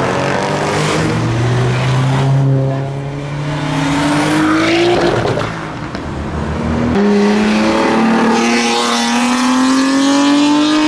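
Modified cars accelerating hard away from a car meet, engine note climbing steadily in pitch. About seven seconds in, a new engine note cuts in and climbs again.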